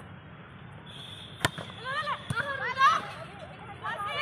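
A volleyball struck hard by a hand, one sharp smack about a second and a half in, followed by players shouting.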